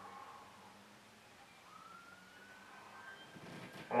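Faint high tone that fades out in the first half second. From a little before halfway, a second faint tone slowly rises in pitch and fades near the end, over quiet room tone with a low hum.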